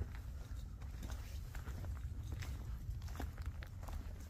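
Faint footsteps on a dirt trail, a scatter of soft irregular scuffs over a steady low rumble.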